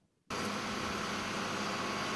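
A tractor's engine running steadily while it pulls a disc plough through soil: an even, noisy drone with a low hum underneath. It starts suddenly about a quarter of a second in.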